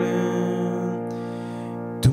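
Piano chord played with both hands, held and slowly fading.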